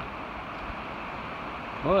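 Steady rushing of the Savannah River, an even, unbroken noise of moving water.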